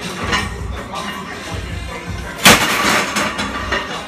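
A heavily loaded barbell crashing down about two and a half seconds in: one loud slam of iron plates with a short ringing tail, the bar dumped as a 635 lb front squat fails. Gym background music runs underneath.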